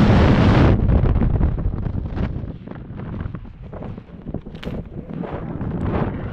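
Loud rushing wind of a skydiver's freefall on a helmet camera's microphone, cutting off abruptly under a second in. Quieter, uneven wind buffeting follows under the open parachute canopy.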